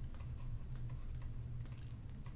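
Faint, rapid clicks and light scratches of a pen stylus writing a word on a tablet, over a steady low hum.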